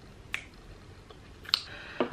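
Two short, sharp clicks about a second apart, over quiet room tone.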